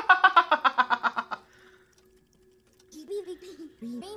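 A man laughing hard: a fast run of loud, evenly spaced bursts that stops about a second and a half in. Softer voices follow near the end.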